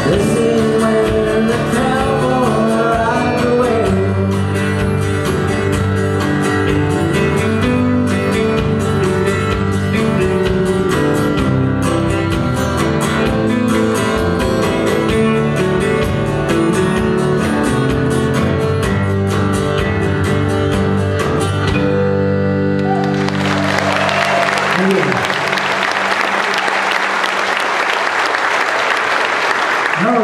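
A live country band, with acoustic and electric guitars, accordion and drums, plays the closing bars of a song that ends about 23 seconds in. Audience applause follows to the end.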